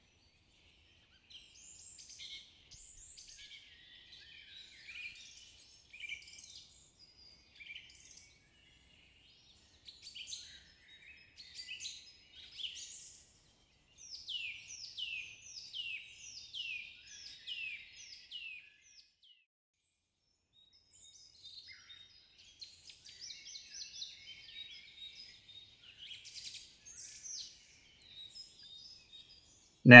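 Songbirds chirping and singing in a quiet forest ambience. Midway there is a run of quick falling whistled notes, about two a second.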